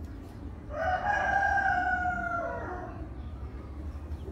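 A rooster crowing once: one call about two seconds long that starts about a second in, rises briefly and then slowly sinks in pitch.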